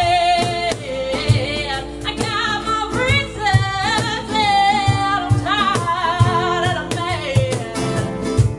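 Live acoustic song: a woman singing with vibrato over a strummed acoustic guitar, with low cajon thumps keeping the beat.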